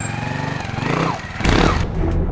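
Trials motorcycle engine running and revving, with falling glides in pitch and a loud burst of noise about one and a half seconds in.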